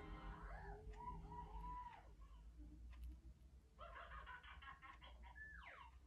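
Pet budgerigars chattering faintly: a run of about four short arched chirps in the first two seconds, then a burst of rapid scratchy chatter and a quick falling whistle near the end.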